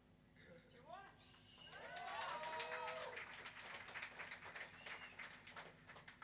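A small audience clapping and calling out briefly, with a few whoops, in a quiet gap between songs at a live rock show. The clapping swells about two seconds in and dies away near the end.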